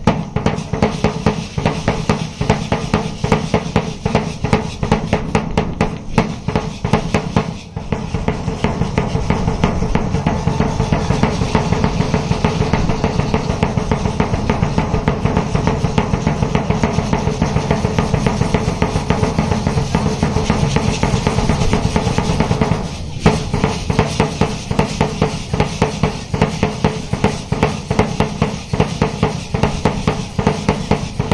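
Marching drum beaten with a single stick in a fast, driving dance rhythm. A few seconds in the strokes thicken into a near-continuous roll, which breaks off near the end and returns to separate beats.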